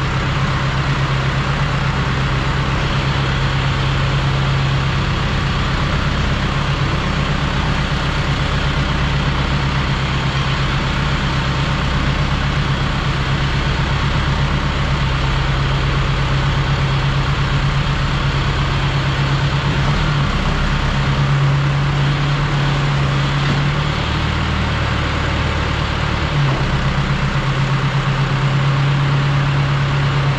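Tractor engine running steadily under PTO load, driving an Abbey diet feeder as it discharges feed, heard from inside the tractor cab. The engine note shifts slightly a few times after about twenty seconds.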